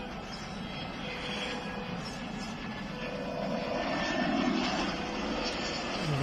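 Jet airliner landing, its engine noise a distant steady rush that swells to its loudest a little past halfway and then eases.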